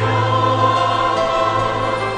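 Mixed choir singing with instrumental accompaniment, holding a chord over a steady bass note.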